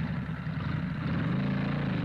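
Vehicle engine sound effect running steadily, a low drone whose pitch rises a little about a second in.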